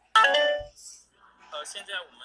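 A phone notification chime: several clear electronic tones sounding together, loud and sudden, dying away after about half a second.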